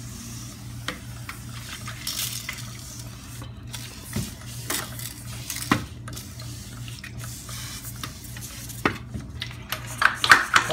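Handheld sprayer misting a mold-removal product onto wet wall studs and drywall: several bursts of hiss with a few sharp clicks, over a steady low hum.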